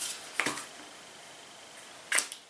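Quiet room tone, broken once about half a second in by a short, soft noise from handling a small aerosol shower-foam can.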